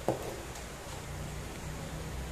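A single light knock just after the start, from eggs being handled in a paper egg tray, followed by a couple of faint ticks over a low steady hum.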